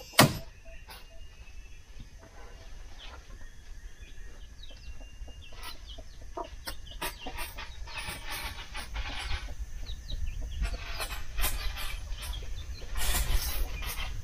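Quiet outdoor ambience: a sharp knock just after the start, then scattered light knocks and taps, a few short calls of birds or fowl, and a low rumble that grows stronger in the second half.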